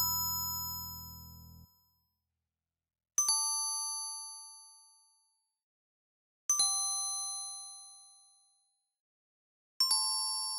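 Sequenced music from a software bell-like instrument: two-note chords struck four times, about every three seconds, each ringing out and fading before the next. A low bass note under the first chord stops about one and a half seconds in.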